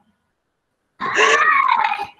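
About a second of silence, then a woman's voice answering with one long, drawn-out "no" whose pitch rises and falls.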